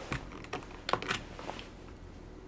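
Typing on a computer keyboard: a handful of irregular key clicks.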